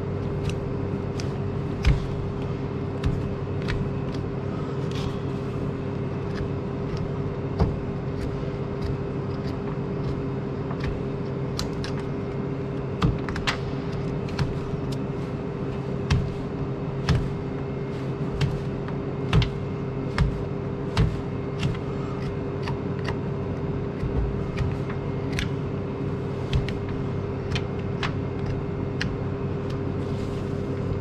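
A hoof knife paring horn from a cow's claws, heard as irregular short, sharp snicks, about one a second, over a steady low machine hum.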